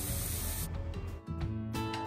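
Oil sizzling in a wok as shredded cabbage and grated carrot go in on top of frying garlic, cutting off abruptly under a second in. Background music follows.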